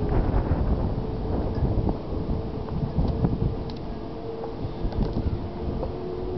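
Wind buffeting the microphone: an uneven low rumble that gusts up and down. A faint steady hum and a few light ticks sit underneath.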